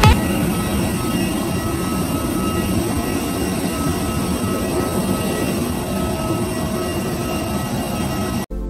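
Steady jet aircraft noise: an even rumble and hiss with a few thin, steady whining tones over it.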